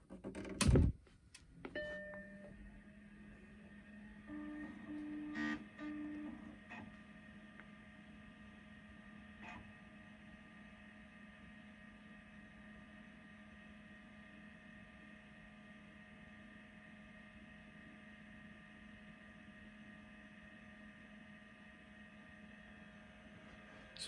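Apple Macintosh SE being switched on: a loud power-switch click, a short startup beep about two seconds in, then the steady hum of its cooling fan and hard drive running up. A burst of drive noise comes around five seconds in, followed by a few faint clicks as it boots.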